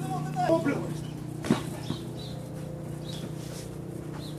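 A short shouted call from a player, then about a second and a half in a single sharp thump of a football being kicked on artificial turf, with a lighter tap just after. A steady low hum runs underneath.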